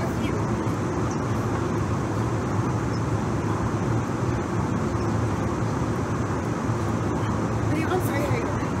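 Steady drone of airliner cabin noise in the galley, an even, unchanging roar.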